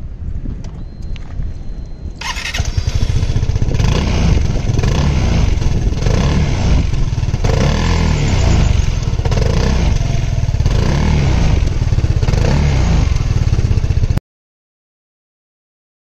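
Keeway Sixties 300i scooter's 278cc single-cylinder engine starting about two seconds in, then running with a series of throttle blips that rise and fall through its exhaust. The sound cuts off abruptly near the end.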